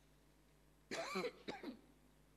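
A man coughing twice close to a microphone, about a second in and again just after, with low room tone around it.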